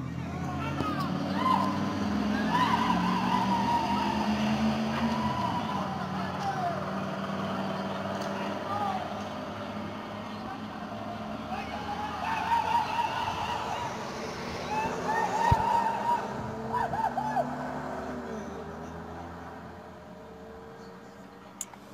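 Pickup truck engines revving and pulling away during the first six seconds, while men shout and whoop in celebration throughout. One sharp pop sounds about fifteen seconds in.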